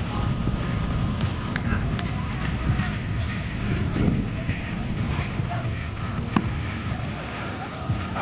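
Wind noise on the microphone over faint background voices, with a few short sharp clicks, the sharpest about six seconds in.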